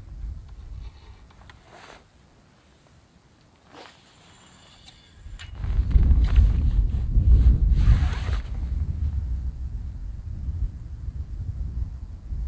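Wind buffeting the microphone, a gusty low rumble that comes in suddenly about five and a half seconds in and stays loud. Before that, a few short rustles and clicks come from handling the feeder rod and spinning reel.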